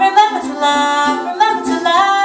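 Woman singing live, holding long notes, with soft ukulele strumming underneath.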